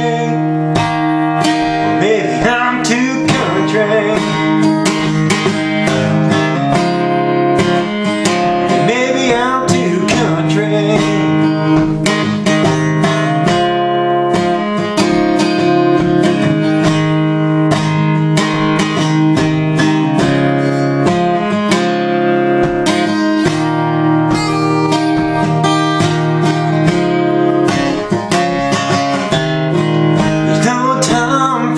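Acoustic guitar strummed in steady chords, playing a country song solo.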